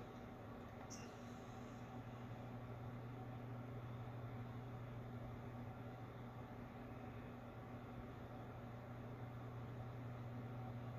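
Faint room tone: a steady low hum under a soft hiss, with a brief faint high tick about a second in.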